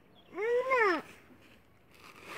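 A toddler's single high-pitched vocal sound, under a second long, its pitch rising and then falling.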